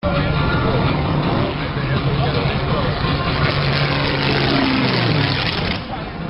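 Engine of a low-flying display aircraft running steadily under a loud haze of noise, its pitch dropping slightly about five seconds in, with spectators' voices mixed in.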